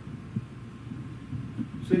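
Low, steady background hum in a pause between speakers, with a man starting to speak right at the end.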